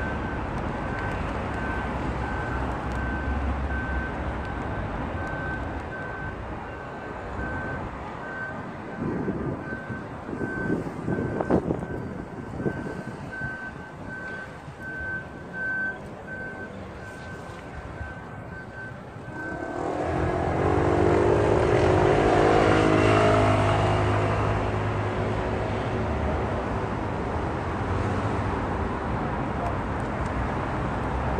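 Street traffic: a single high beep repeating a little more than once a second for about twenty seconds, then a large vehicle's engine growing louder and passing.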